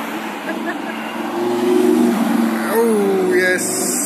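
Lamborghini Huracán's V10 engine running as the car drives past at low speed, a steady engine note that lifts briefly in pitch about three seconds in.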